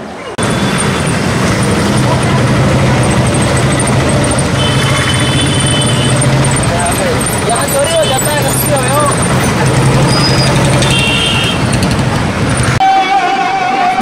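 Riding in an auto-rickshaw through busy traffic: a steady engine drone and road noise, with vehicle horns tooting in two bursts. Near the end it cuts abruptly to singing with music.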